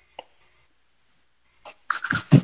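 Near silence broken by one short, clipped vocal sound about a fifth of a second in; speech starts at the very end.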